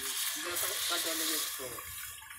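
Water poured into a hot pot of fried masala, sizzling steadily and fading near the end.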